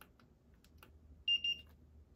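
Handheld infrared thermometer beeping twice in quick succession, two short high-pitched beeps as it takes a surface temperature reading.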